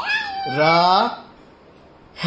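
A drawn-out, rising sing-song voice for about the first second, then a quiet pause.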